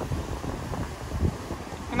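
Wind rumbling on the microphone, a steady low haze with no clear other sound.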